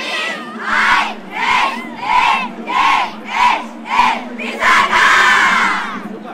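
A group of schoolchildren chanting together in unison: six short shouts in a steady rhythm, a little over half a second apart, ending in one long cheer.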